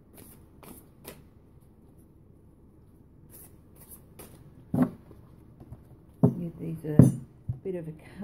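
Tarot deck being shuffled by hand: cards slide against each other in short, soft swishes. In the second half come several louder knocks as the deck is handled, the loudest about seven seconds in.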